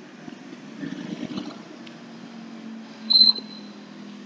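Chalk scratching and tapping on a blackboard as lines are drawn, then a brief, loud, high-pitched chalk squeak about three seconds in.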